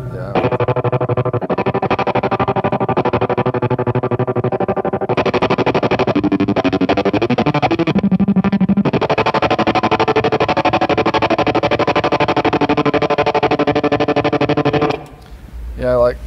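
Distorted electric guitar, a Telecaster, played through a Jackrabbit tremolo pedal on its intense 'super chop' setting. The chords are chopped on and off several times a second. The playing cuts off suddenly near the end.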